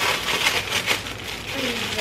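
Thin clear plastic packaging bag crinkling as it is pulled open by hand, loudest in the first second.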